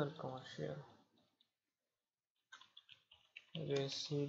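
Computer keyboard typing: a short run of key clicks about two and a half seconds in, between stretches of speech.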